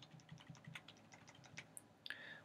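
Faint computer keyboard keys clicking in a quick irregular run: arrow keys being tapped to step a crosshair along a graph.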